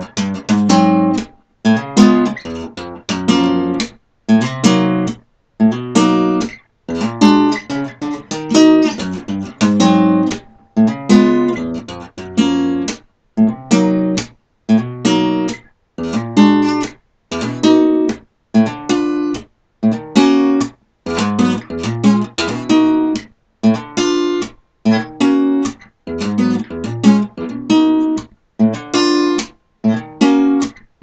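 An Alvarez acoustic-electric guitar played fingerstyle: plucked chords that ring briefly and break off into short silences, in a steady stop-start rhythm.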